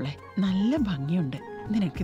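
A woman speaking Malayalam in an animated, sing-song voice, her pitch rising and falling, over a soft background music score.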